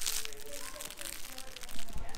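A baby's fabric crinkle toy rustling and crackling briefly at the start as it is handled, then faint soft vocal sounds.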